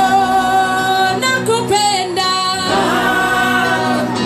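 Worship song in a church service: singing with instrumental accompaniment, the voices holding long notes.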